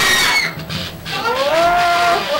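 A burst of hissing noise for the first half second, then a drawn-out vocal cry that rises in pitch and is held for under a second near the end.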